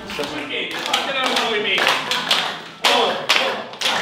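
Hand claps in a slow, even rhythm, about two a second, starting near the end, after a stretch of voices and light tapping.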